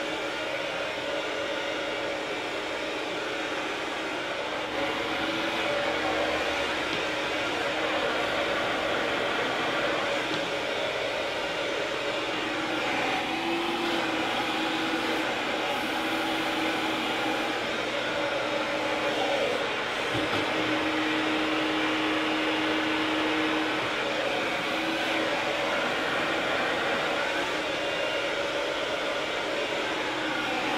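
Handheld hair dryer blowing steadily as it is worked through long hair with a round brush, its motor tone wavering slightly as the airflow changes.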